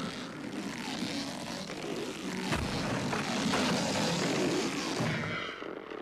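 Hospital gurney rushed along a corridor: a steady rolling rattle with a few sharp knocks, dying away near the end.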